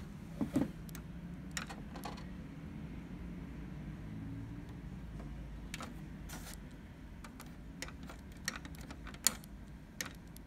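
Scattered clicks and taps as the power button of an HP LaserJet Pro 400 MFP M425 laser printer is pressed, with no motor or fan starting up in reply: the printer has no power. A low steady hum runs underneath.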